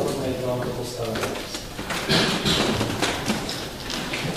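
Indistinct speech: a man talking, not clearly picked up by the microphone.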